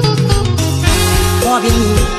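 Thai mor lam duet song playing: a band with a steady beat, and a voice singing about a second and a half in.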